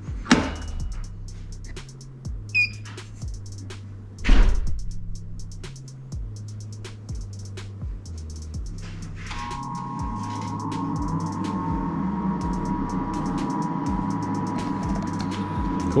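Background music with a beat, with a knock just after the start and a louder one about four seconds in. From about nine seconds a steady hum with a whine sets in as the Anatol screen-printing dryer, just switched on at its power disconnect, powers up.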